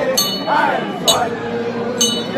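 Metal percussion struck about once a second, each sharp clink ringing on briefly, over voices chanting.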